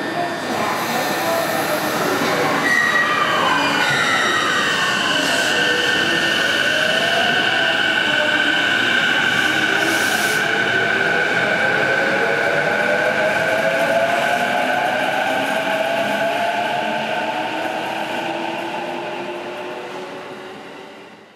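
Subway train pulling away and accelerating. Its electric motors whine in several tones that climb slowly in pitch, over a steady high squeal. The sound fades out near the end.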